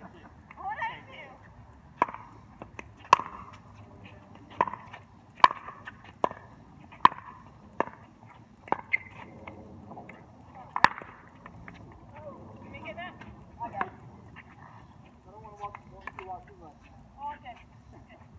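Pickleball rally: paddles striking a hard plastic pickleball back and forth, about nine sharp pocks a second or less apart, stopping about eleven seconds in. Players' voices follow near the end.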